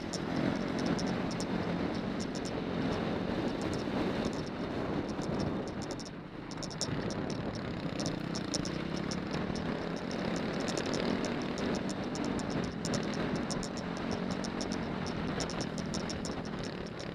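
Off-road motorcycle engine running steadily as the bike rides over a gravel riverbed, with a scatter of sharp high clicks throughout. The engine eases off briefly about six seconds in, then picks up again.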